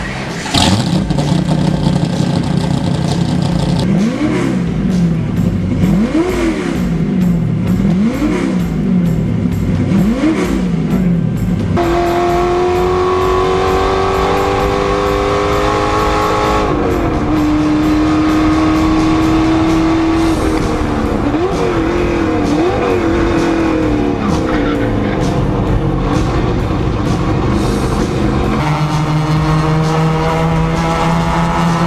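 Race car engine firing up with a sudden catch, then blipped in four quick revs about two seconds apart. From about twelve seconds in it pulls hard with rising pitch. There is a gear change near seventeen seconds, then a few short blips like downshifts, and it pulls again near the end.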